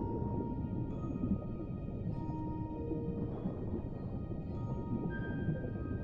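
A music box playing a slow lullaby, single ringing notes about a second apart, over a steady muffled underwater rumble. A low, drawn-out whale-like call sounds near the middle.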